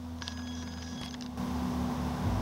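A steady low hum. For about a second near the start, a few faint, thin high tones sound over it.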